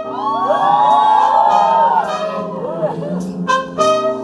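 Live band with a horn section of saxophone and trumpet playing loudly, with the audience cheering and whooping over it for about the first two seconds.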